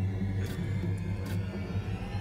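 Dark, low backing music: a steady deep bass drone with a few faint, short percussive hits and no vocals.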